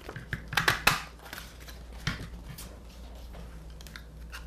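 A handheld Toke e Crie bird-shape craft punch pressed through paper: a cluster of sharp clicks and a short crunch about a second in, then another click about two seconds in.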